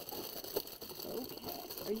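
Plastic packaging rustling and utensils clinking as a packaged pair of acrylic tongs is pushed into a plastic drawer crowded with packaged stainless-steel spatulas. The sounds are short and scattered, with one small click about half a second in.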